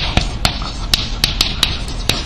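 Chalk writing on a blackboard: an irregular run of about eight sharp taps in two seconds, with scratchy hiss between them as the letters are drawn.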